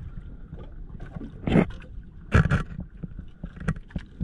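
Water slapping and splashing against the hull of a small outrigger boat, two loud splashes about a second and a half and two and a half seconds in, over a steady low rumble of water and wind.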